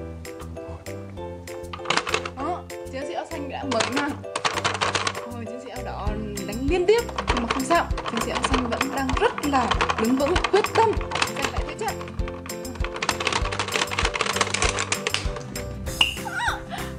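Background music with bursts of rapid plastic clicking from a two-player boxing toy's punch buttons being mashed: a short burst about two seconds in, a longer one around four seconds, and another near the end. Voices and laughter come over the middle.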